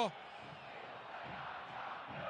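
Steady murmur of a football stadium crowd, heard faintly through the TV broadcast.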